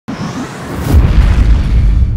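Cinematic logo-intro sound effect: a rising whoosh that lands in a deep boom about a second in, its low rumble carrying on.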